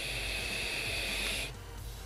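Vape draw on a Vaporesso Cascade Baby tank with a 0.18-ohm mesh coil fired at 65 watts: a steady airy hiss that stops abruptly about a second and a half in as the draw ends.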